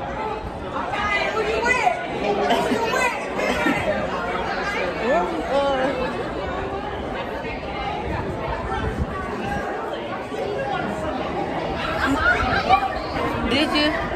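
Indistinct chatter of several people talking at once, with overlapping voices and no clear words, in a large hall.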